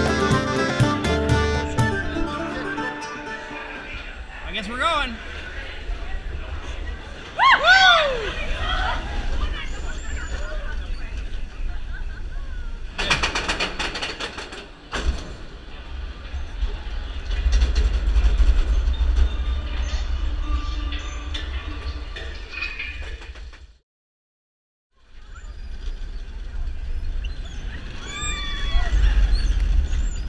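Seven Dwarfs Mine Train roller coaster running along its track with a steady low rumble, while riders give rising-and-falling screams and whoops about 5 and 8 seconds in and again near the end. Accordion music fades out in the first two seconds.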